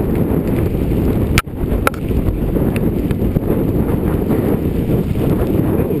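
Strong mountain wind buffeting the camera's microphone in a steady low rush, with a sharp click about a second and a half in and a fainter one just after.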